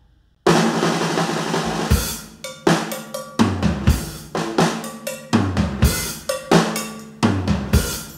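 Rock band recording kicking off suddenly about half a second in after a brief near-silent gap, led by a loud drum kit beat of snare, bass drum and cymbals hit in a driving rhythm.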